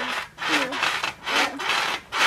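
A person breathing hard and fast, about two noisy breaths a second, out of breath from exertion.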